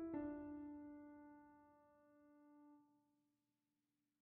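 Background piano music: a chord struck just at the start rings and slowly fades away, dying out to silence for the last half second or so.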